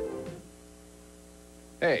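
Music from the end of a TV promo fades out in the first half-second. A steady electrical mains hum from the old VHS recording is left in the short gap between commercials.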